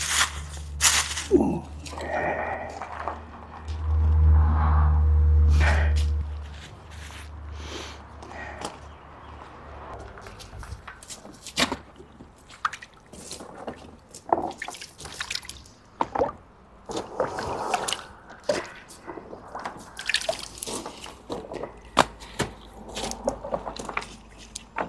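Water splashing and dripping as a gloved hand moves quartz crystal plates around in a drum of water, with frequent short knocks and splashes. A low rumble runs through the first several seconds, loudest a few seconds in.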